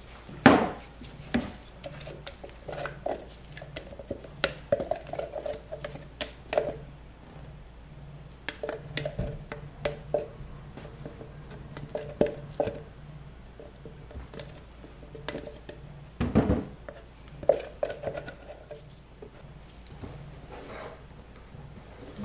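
Spatula scraping and tapping against plastic cups and a plastic pitcher while soap batter and colourant are scooped and scraped in, a scatter of short clicks and knocks with the loudest about half a second in and again near the three-quarter mark.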